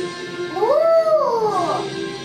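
National anthem playing from a television, with one long wail over it about half a second in that rises and then falls in pitch, lasting about a second.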